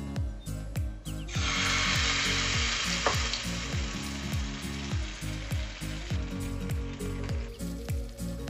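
Bread paratha batter sizzling loudly as it is poured into hot oil with spluttered mustard seeds in a nonstick frying pan. The hiss starts about a second in and dies down near the end as the batter settles.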